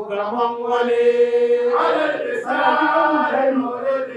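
Male voice chanting an Arabic Mawlid qasida, a devotional praise poem for the Prophet's birthday, holding one long note for about a second and a half before moving into shorter sung syllables.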